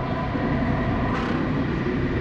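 Cinematic soundtrack drone: a dense low rumble under several held, steady tones, slowly fading, the tail of an impact hit.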